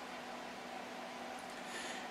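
Faint steady background hiss with a low hum: room tone in a pause between spoken phrases, with no distinct sound event.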